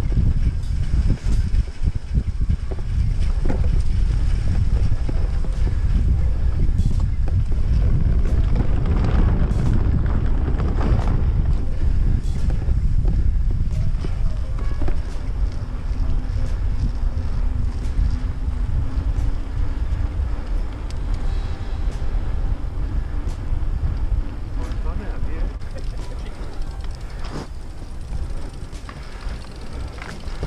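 Wind buffeting the microphone of a mountain bike rider's action camera while riding, a steady loud rumble mixed with rolling noise; it eases a little near the end.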